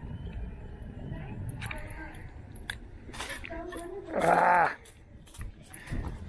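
Wind rumbling on the action camera's microphone, with scattered clicks and rustles of the fish and rod being handled. About four seconds in, a loud short vocal sound lasting about half a second.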